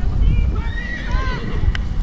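A horse whinnying, a few short wavering high calls in the first second and a half, over a steady rumble of wind on the microphone.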